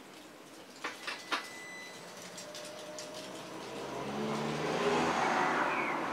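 BMW K1600GT motorcycle being switched on before starting: three clicks about a second in, then a hum that swells steadily over the last three seconds, with another click near the end.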